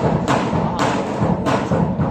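Live folk ensemble music with accordions, driven by a heavy thumping beat about twice a second.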